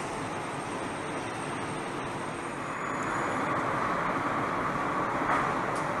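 Steady rushing noise, like air or distant machinery, with no distinct events; it grows somewhat louder about halfway through.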